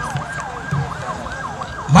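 A yelping siren, its pitch sweeping up and down about three times a second.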